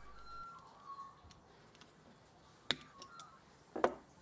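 Side cutters snipping through a coil of steel coat-hanger wire to cut off chainmail rings: a sharp snap a little under three seconds in, a few faint clicks, then another snap near the end.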